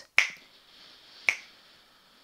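Sharp ticks about once a second, three of them, keeping a steady count. Between the ticks is a long, soft inhale through one nostril.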